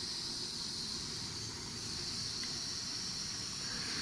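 Heat-gun attachment blowing hot air onto heat-shrink tubing, a steady even hiss.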